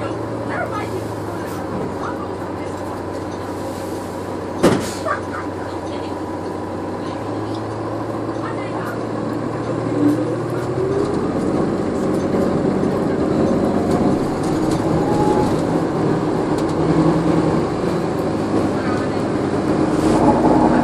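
Inside the cabin of a 2014 NovaBus LFS hybrid bus with a Cummins ISL9 diesel and Allison EP 40 hybrid drive: a steady running hum, a sharp knock about five seconds in, then from about halfway the bus gets louder with a rising whine as it pulls away. Passenger voices murmur underneath.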